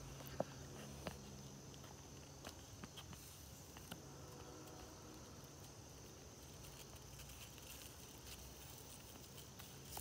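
Faint outdoor quiet: a thin, steady, high insect drone, with a few soft clicks and rustles as the fig branch is handled.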